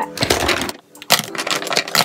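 Plastic makeup tubes, pencils and compacts clattering against each other as they are dropped by hand into a cosmetic bag: two runs of quick clicks and rattles with a short pause about a second in.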